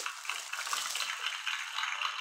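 Clear cellophane gift bag crinkling and rustling as it is handled, a continuous crackly noise.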